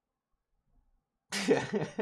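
Near silence, then about 1.3 s in a man breaks into a short, choppy, coughing laugh.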